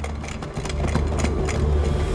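A low, steady rumbling drone of a dramatic film score, with scattered light clicks and clinks over it during the first second and a half.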